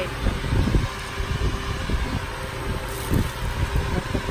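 An uneven low rumbling noise with a steady hiss.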